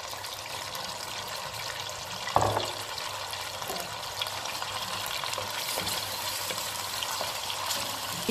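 Baby octopuses and small cuttlefish sizzling in hot olive oil with leek in a large aluminium pan, stirred with a wooden spoon. A single knock about two and a half seconds in.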